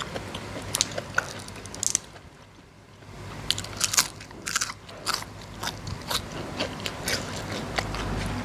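Crisp bites and chewing on a raw green vegetable pod, a run of sharp, irregular crunches. A short pause comes about two seconds in, then the crunching starts again and keeps going.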